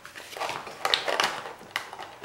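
Hands handling a clear plastic clamshell package and a fabric sheath: a few short crinkles and light clicks of the stiff plastic.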